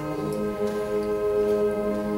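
School concert band playing sustained, held wind chords, with a light, regular ticking in the background.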